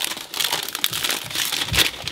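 Plastic wrapping being peeled off a Mac mini and crinkling in a run of irregular crackles.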